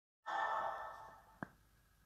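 A woman's breathy sigh that starts suddenly, loud at first and fading away over about a second, followed by a single short click.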